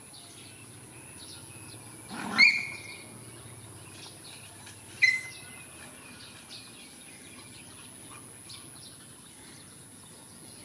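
Two loud, high bird calls: the first about two seconds in, sliding up into a briefly held whistle, the second shorter, about five seconds in. Faint bird chirps run underneath throughout.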